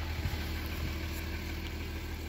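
Audi A8 3.0 V6 TDI diesel engine idling steadily, heard from inside the cabin, with its intake swirl flaps freshly adapted.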